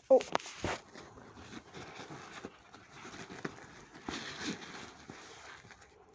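Close handling noise: soft rustling of a fabric pencil case with small clicks and taps as a spiral notepad is pushed into its pocket.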